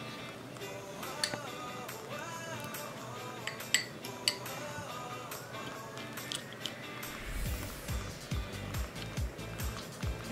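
Background music, with a deeper beat coming in near the end. Over it, a metal fork clinks several times against the glass jar of a candle while scooping a foil-wrapped packet out of the melted wax.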